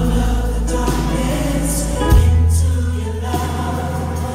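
Live gospel music: a choir singing over the band, with a deep bass note that shifts about two seconds in.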